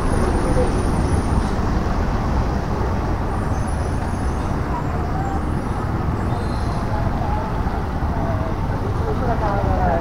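Steady road traffic noise from a busy highway, a continuous low rumble of passing vehicles, with faint voices of people nearby in the second half.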